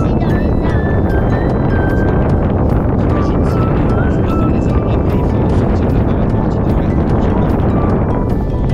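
Strong wind rushing over the microphone of a camera carried by a paraglider in flight, with faint high tones stepping up and down in pitch behind it.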